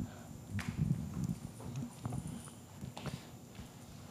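Handling noise from a handheld microphone being passed to another person: soft knocks and rubbing at irregular intervals.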